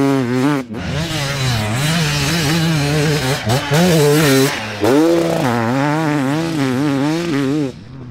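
Enduro dirt bike engines revving hard, their pitch rising and falling with the throttle as riders go by one after another. The sound changes abruptly a few times and drops in level near the end.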